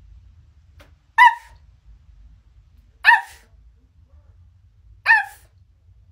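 A woman imitating a dog on command: three short, high-pitched barks, about two seconds apart.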